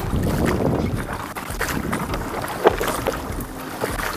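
Wooden canoe pushing through flooded shoreline grass and brush: stems rustling and scraping along the hull over the swish of water, with one sharp knock about two-thirds of the way through.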